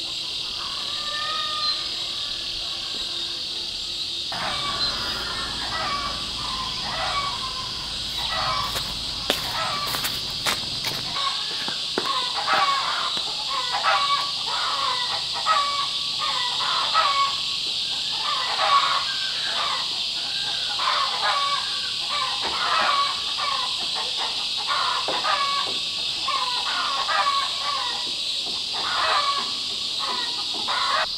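A steady high-pitched insect chorus runs throughout. From about four seconds in, chickens call over it again and again.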